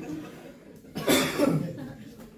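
A man coughing: one loud, sudden cough about a second in.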